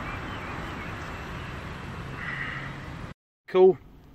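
Renault Captur's electric power-folding door mirror motor running as the mirror swings back out, over a steady hum inside the car. The sound cuts off abruptly near the end, and a short spoken word follows.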